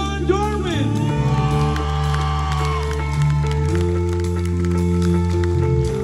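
Live rock band holding long sustained keyboard chords over a steady bass line, a high held note with slight vibrato above them, the chord changing a little past halfway. A man's voice is heard briefly at the very start.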